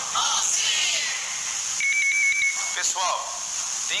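A single steady high electronic beep lasting just under a second, about two seconds in, between spoken segments of a radio broadcast.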